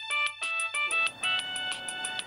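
Mobile phone ringing with a melodic ringtone: a bright electronic tune of quick high notes stepping over a fast, even ticking beat.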